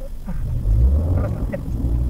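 Low road and engine rumble of a moving car, picked up in the cabin, swelling about half a second in, with a few short, high, voice-like sounds over it near the middle.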